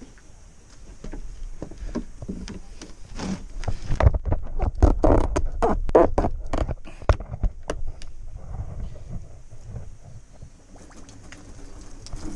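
A dense run of sharp knocks, scrapes and rumbling from about four to eight seconds in, from a garden hose and pipe being handled and moved about beside the tank. A faint steady hiss sits under the quieter parts at the start and near the end.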